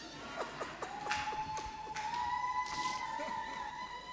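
Public-address feedback from a handheld microphone: a single steady, whistle-like tone that starts just under a second in, creeps slightly higher in pitch about two seconds in, and holds on. A few short faint sounds come just before it.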